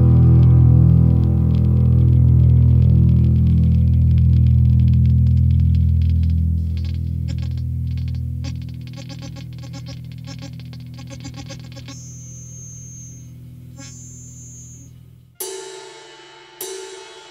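Rock music: a distorted electric guitar chord rings out and fades as a song ends, its low end dropping away about halfway through and thin high tones lingering near the end. The next song starts suddenly near the end.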